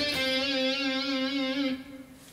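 Electric guitar ending a short, simple lick: a quick climbing run into one long held note with vibrato. The note stops shortly before the end.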